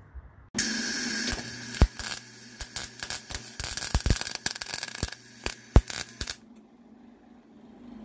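An electric arc welder welding a steel bracket onto a hinge plate that is thought to be zinc-plated. It gives a steady crackle with sharp pops over a low hum, starting about half a second in and cutting off after about six seconds.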